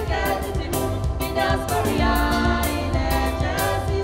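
Church choir singing a hymn, many voices together.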